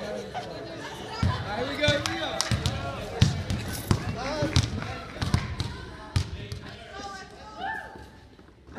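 Basketball being dribbled on a wooden gym floor, a bounce roughly every two-thirds of a second starting about a second in, with men's voices alongside.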